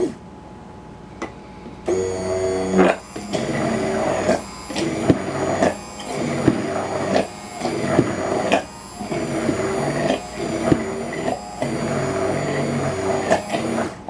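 Hand-held immersion blender running in a glass jar of homemade mayonnaise as it is emulsified and thickened. The motor starts about two seconds in and is pulsed, dropping out briefly about every second and a half.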